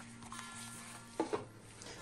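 Faint background music, with two quick light knocks a little over a second in as an empty metal candle tin is set down on the countertop.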